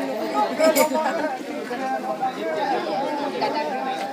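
Many people talking at once, the chatter of a large group standing together, with a sharp click a little under a second in.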